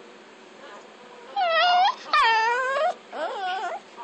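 Chihuahua crying in high-pitched whines: three drawn-out cries that bend up and down in pitch, the first two loud and the last one fainter.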